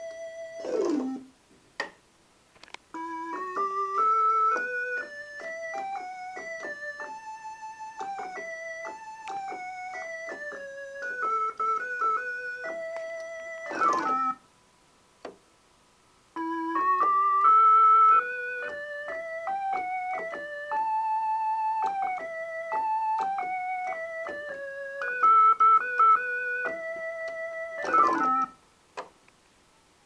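Farfisa Fast 2 transistor combo organ, freshly restored, playing a melody phrase that climbs and falls, repeated twice, each phrase ending in a fast downward sweep followed by a short pause.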